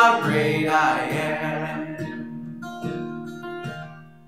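A man singing to his own acoustic guitar: the voice stops about a second in, and a few more guitar strums ring on, getting steadily quieter.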